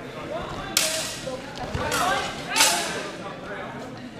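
Steel HEMA swords clashing during an exchange: three sharp clashes, each with a short ring, within about two seconds, the last the loudest.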